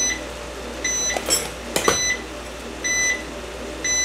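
Air fryer's timer beeping, short high electronic beeps about once a second, signalling its cooking cycle is done. A single knock sounds about two seconds in.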